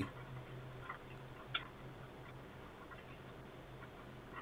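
Quiet room tone: a faint steady low hum with a few soft ticks, one sharper click about one and a half seconds in.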